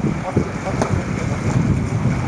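Wind buffeting the camera microphone as a steady low rumble, with a few brief knocks in it.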